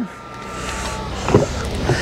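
Power liftgate motor of a 2024 Lexus GX 550 whining steadily as the gate closes, stopping about a second in, followed by a short knock.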